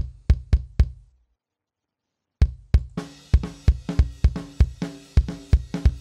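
A sampled kick drum, triggered from MIDI to replace a recorded kick, plays a steady pattern at about four hits a second. It stops for about a second and starts again, and from about three seconds in the rest of a heavy rock mix plays along with it.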